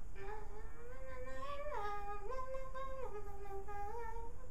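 A girl humming a tune with her mouth closed, in held notes that step up and down in pitch.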